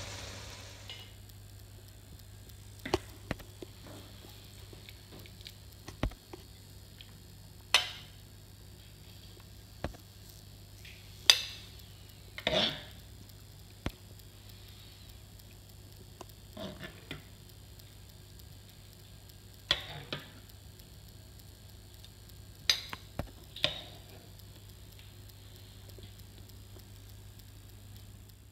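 Metal serving spoon clinking and scraping against a frying pan and a ceramic bowl as stir-fried noodles are spooned out: a dozen or so sharp, irregular clinks and taps with quiet gaps between them.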